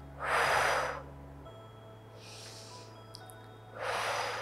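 A woman's slow, deliberate breathing: a loud out-breath blown through pursed lips just after the start, lasting under a second, a softer, hissier in-breath around two seconds in, and the next blown out-breath just before the end.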